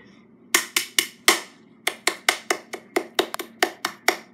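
A quick, irregular run of about fifteen sharp knocks or slaps over roughly three and a half seconds, sound effects in a cartoon's soundtrack.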